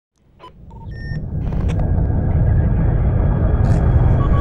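Sound design for an animated logo intro: a deep rumble swelling up from silence over the first couple of seconds, with a few short electronic beeps in the first second and a brief burst of static-like glitch noise near the end.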